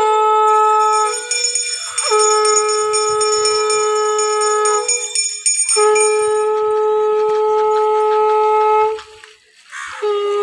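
Conch shell (shankha) blown in long, steady, single-pitched blasts, about three of them with short breaks between, as ritual sounding for a puja immersion. A brass hand bell rings faintly underneath.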